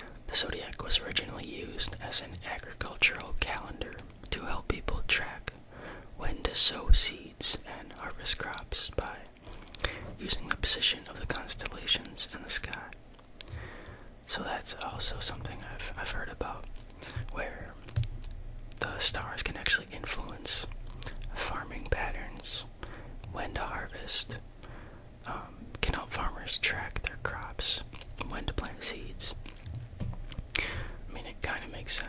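A man whispering close to a microphone.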